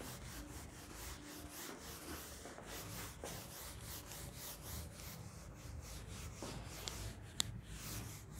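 A whiteboard duster rubbing over a whiteboard in quick repeated strokes, wiping off marker writing. There is a single sharp click near the end.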